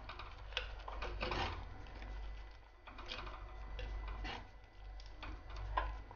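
Steel spoon stirring a thick curd-based pineapple pachadi in a clay pot, with faint irregular clicks and scrapes of the spoon against the pot and soft squelches of the mixture.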